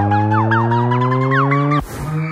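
Electronic dubstep build-up playing: a synthesizer riser chord over a held bass, climbing slowly in pitch, with short falling-pitch blips repeating about three times a second on top. It all cuts off abruptly near the end.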